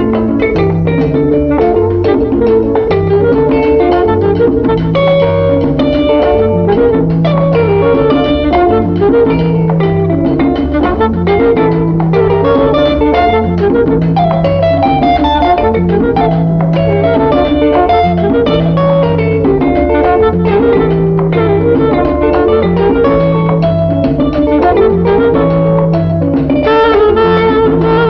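Instrumental passage of an Afro-Cuban salsa recording: a repeating bass figure under percussion and a plucked-string melody, with no singing. Wind instruments come in near the end and the sound fills out.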